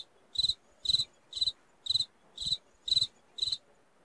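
Cricket chirping sound effect: seven short, evenly spaced chirps, about two a second, with near silence between them. This is the comic 'crickets' gag marking an awkward silence.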